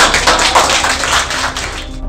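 A group of children applauding: a dense patter of hand claps that starts suddenly and stops just before the end.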